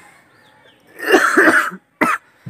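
A man's short, harsh burst of breath from the throat, about a second in and lasting under a second, with a brief catch of breath right at the end.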